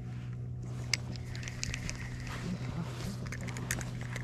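Scattered clicks and rustling from a spinning rod and reel as a crappie is reeled in, over a steady low hum.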